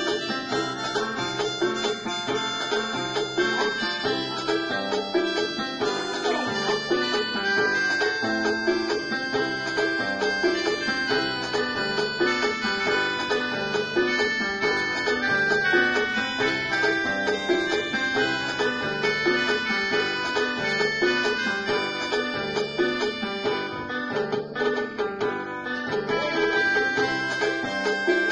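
Electronic organ played by hand: a melody with chords over a steady, evenly repeating bass line, running without a break.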